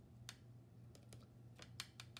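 Near silence with a low steady hum and a few faint, light clicks as a paintbrush works paint in the plastic wells of a watercolor pan set.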